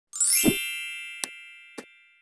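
Logo intro sound effect: a quick rising sweep into a bright ringing chime with a low thump, the chime slowly dying away, then two short clicks about half a second apart.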